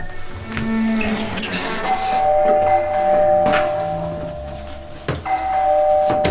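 Two-tone doorbell chime rung twice: each time a high note and then a lower one, left ringing for a few seconds. A few dull knocks come in between.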